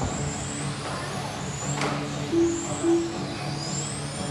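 Radio-controlled 1/10 electric touring cars with 21.5-turn brushless motors whining around the track, the pitch rising and falling as the cars accelerate and brake for corners. A sharp click a little under two seconds in.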